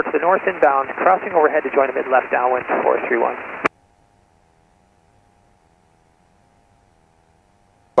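Talking over the cockpit headset intercom, thin and cut off above the upper voice range, for about three and a half seconds. The audio then cuts out abruptly with a click, leaving near silence with a faint steady hum.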